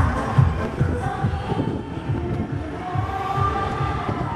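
Korean election campaign song with a steady beat, played over a campaign truck's loudspeakers.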